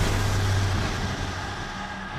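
A low, steady rumbling drone with a hiss over it, slowly fading: cinematic trailer sound design under a title card.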